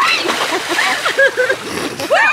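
Pool water splashing as a woman held up by others drops into the water, strongest in the first half-second, with women's voices shouting and laughing over it.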